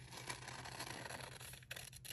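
Scissors cutting through folded paper, a faint, continuous cut that breaks off briefly near the end.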